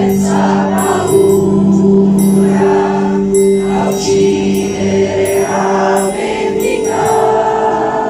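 A choir of teenagers singing together under a conductor, with long held notes that change about six seconds in.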